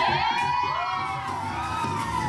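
Stage music for a burlesque act. Over it, a long high pitched 'woo' rises and then falls over about a second and a half, with some audience cheering.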